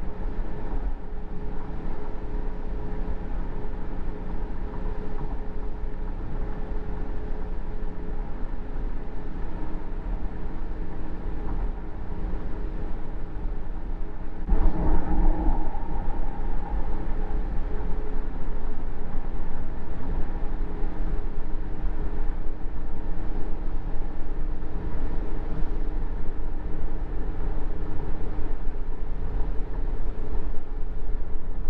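Car interior noise while driving at expressway speed through a road tunnel: a steady low road and engine rumble with a faint hum. About halfway through there is a brief louder swell, and the noise stays a little louder afterwards.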